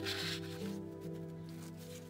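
Sheets of handmade mesh paper rubbing and rustling as they are handled, strongest in the first half-second, over soft background music with held notes.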